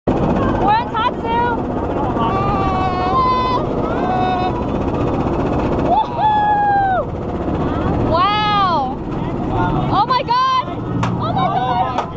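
Roller coaster riders letting out a string of high-pitched squeals and exclamations, with one long held cry past the middle and a rising-then-falling shriek soon after, over a steady low rumble of the moving ride.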